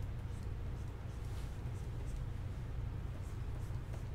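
Stylus strokes on a Wacom pen tablet: short, soft, irregular scratches of the pen nib on the tablet surface as a figure is sketched, over a steady low hum.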